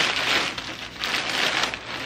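Plastic poly mailer bag crinkling and rustling as it is pulled and torn open by hand, with a short lull just before the middle.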